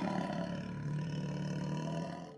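A cartoon bear's roar sound effect: one long, steady roar.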